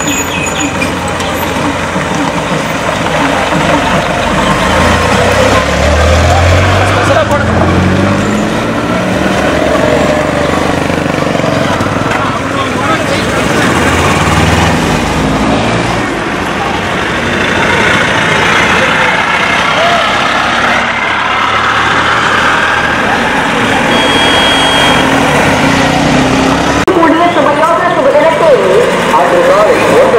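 Trucks driving past one after another, their diesel engines running, with one rising in pitch as it goes by about six seconds in and another around fourteen seconds; people's voices mix in, loudest near the end.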